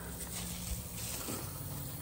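Thin plastic car cover rustling and crinkling softly as it is handled, over a low steady hum.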